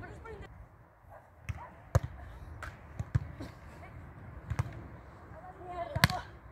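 Beach volleyball in play: a few sharp slaps of hands striking the ball at uneven intervals, the loudest about two seconds in, with faint voices of players on the court.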